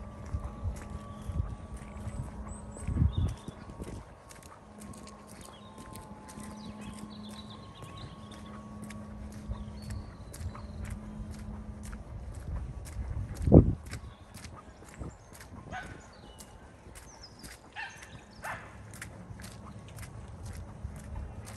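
Footsteps of someone walking on a frosty footpath, a steady tread of about two to three steps a second. There is a single loud thump about two-thirds of the way through.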